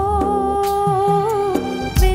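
A woman singing one long held 'O…' at a steady pitch in a Telugu Christian worship song, over instrumental accompaniment with a low bass line. A heavy low beat lands at the very end.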